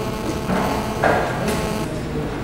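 Knocks and clatters of something being handled at a lectern, with two louder ones about half a second and a second in, over the steady background noise of a large hall.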